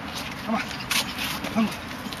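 Two short effort grunts from men sparring in Wing Chun gor sau, about half a second and a second and a half in, with a sharp slap of arms meeting between them.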